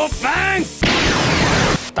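Sound effects from an animated cartoon: a short shouted attack call, then a loud rushing air-blast effect lasting about a second that cuts off abruptly, over background music.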